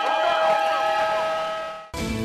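Several car horns held down together, a steady blaring chord from a street full of cars, fading out just before two seconds.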